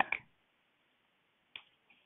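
Near silence after a word ends, with a single faint click about one and a half seconds in.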